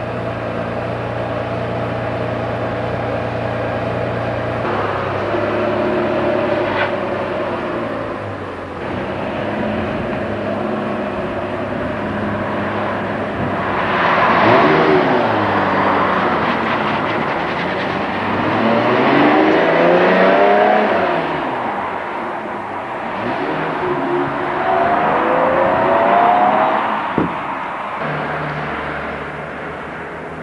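Ferrari Testarossa-type flat-twelve engine idling steadily, then driving off and revving up and down in three pulls as it accelerates, with a sharp click near the end.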